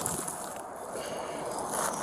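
Steady outdoor wind and handling noise on a body-worn camera's microphone, an even rushing hiss with no distinct events.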